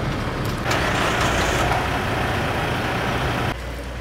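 A motor vehicle running close by on a street: a loud, steady rushing noise over a low engine hum, which comes in suddenly about a second in and cuts off shortly before the end.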